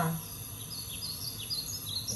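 A bird chirping in the background: a run of short, high chirps starting about half a second in, over a low steady background noise.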